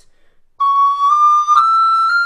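Descant recorder playing four rising notes, C sharp, D, E and F, each joined smoothly to the next: only the first is tongued, and the breath carries on unbroken through the slur. The first note starts about half a second in, and the last begins near the end.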